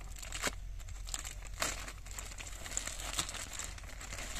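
A thin printed plastic bag crinkling in irregular bursts as hands untie its knot and handle it.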